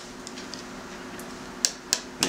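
Two sharp taps near the end, a third of a second apart: a mallet tapping a head dowel into a Ford 351 Windsor V8 engine block, over a faint steady hum.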